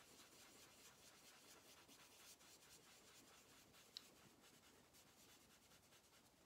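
Faint, rhythmic rubbing of a dry baby wipe on card, swirling ink through a stencil, with one small click about four seconds in.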